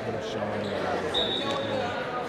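Gym ambience from a group of students exercising on a hardwood court: indistinct voices, with one brief high squeak just after the first second.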